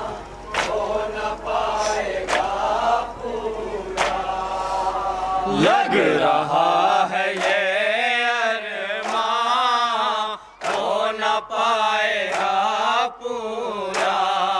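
Male voices reciting a Shia noha (lament) through a microphone and PA, led by one reciter whose long, wavering sung lines take over from about six seconds in. Sharp slaps of matam (chest-beating) come at irregular intervals.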